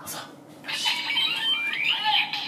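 Kamen Rider Revice toy transformation belt (DX Revice Driver) playing its electronic sound effects about half a second in, set off by pressing its Vistamp: short beeping tones, then a rising synth sweep near the end.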